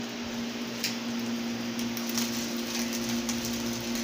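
A steady low hum over an even hiss, with a few faint taps and scrapes of a spoon as refried beans are spread onto a telera roll on a griddle.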